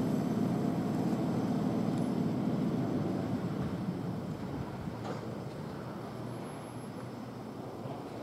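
Long freight train of loaded coal gondola wagons rolling past, a steady low rumble that fades away over the second half.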